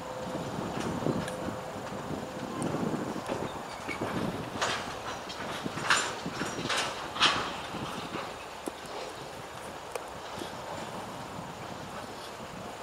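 Freight train cars rolling past on the rails, a steady low rumble of wheels, with a quick run of about five sharp metallic bangs in the middle.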